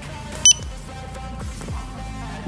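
Zebra DS2208 handheld barcode scanner giving one short, high-pitched beep about half a second in, the signal that it has decoded the QR code. Quiet background music runs underneath.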